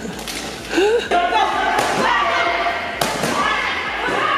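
A laugh and a gasp, then a couple of sharp slaps about a second apart: taekwondo kicks landing on a handheld kick paddle, with voices behind.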